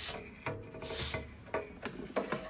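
Sheet-metal case of a Power Designs TW5005 bench power supply scraping as it is slid off the chassis, in a few short rubbing strokes.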